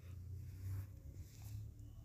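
Faint room tone with a steady low hum. No distinct sound event.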